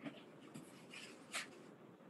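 A few short, soft rustling and handling noises, about half a second apart, picked up by a participant's open video-call microphone.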